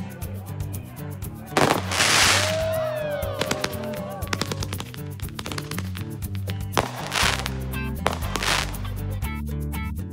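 Background music with a steady beat, over fireworks bursting and crackling; the loudest bursts come about two seconds in and twice more near the end.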